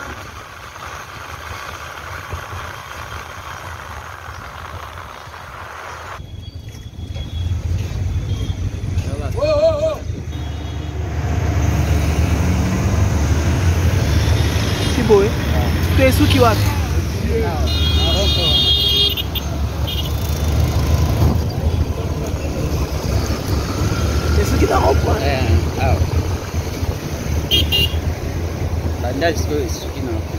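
Ride on a motorcycle through city traffic: low engine and road rumble that gets louder about six seconds in, with voices around and a brief horn toot a little past the middle.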